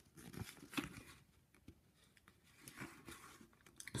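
Faint rustling and crinkling of a paper instruction sheet being handled, in two short spells, about half a second in and again near the end, with near silence between.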